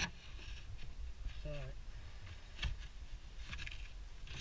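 A hand tool scraping and prying rotten timber and fibreglass out of a boat's glassed-in wooden stringer, with a few sharp knocks, the clearest about two-thirds of the way in, over a steady low rumble.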